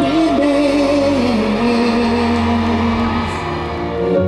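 Male freestyle singer performing live with a band, his voice wavering and then sliding down onto one long held note over sustained chords.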